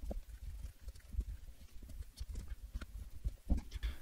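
Computer keyboard and mouse clicks, sparse and irregular, over a low hum.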